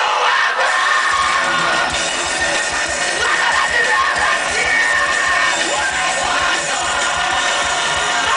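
Live rock band playing loudly, with the crowd close around yelling and singing along.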